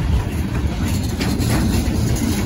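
Freight train's covered hopper cars rolling past: a steady rumble with occasional clacks of wheels passing over rail joints.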